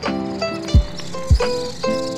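Background music: held instrumental notes that change every half second or so over a beat with deep thumps.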